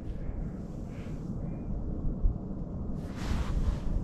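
Wind buffeting the microphone: an uneven low rumble, with a brief hiss about three seconds in.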